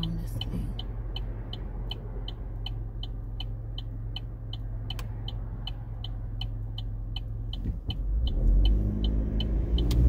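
Car turn-signal indicator ticking steadily, about two ticks a second, over the low hum of the idling engine while the car waits to pull into traffic. Near the end the engine grows louder as the car pulls away.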